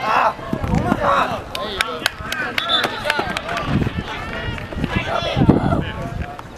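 Voices calling out across a soccer pitch during play, with a quick run of sharp taps from about a second in, lasting a couple of seconds.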